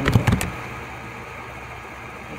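A few keyboard keystrokes as the last letters of a search phrase are typed, then a steady hiss of background noise.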